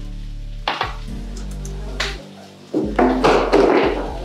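Background music over knife work: a chef's knife cutting fish fillets on a wooden cutting board, with two sharp knocks, about a second and two seconds in, and a louder burst of noise about three seconds in.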